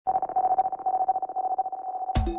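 A single sustained electronic tone, like a telephone dial tone, holding one pitch with a fast, even flutter.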